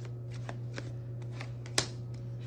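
Tarot deck being shuffled hand to hand, a run of light card clicks, with one sharp snap near the end as a card is pulled from the deck and laid on the wooden table.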